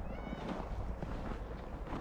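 Footsteps crunching on packed snow at a steady walking pace. Near the start there is a brief high-pitched squeak.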